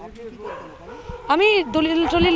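A dog barks once, a short yelp whose pitch rises and falls, about one and a half seconds in, over faint talk.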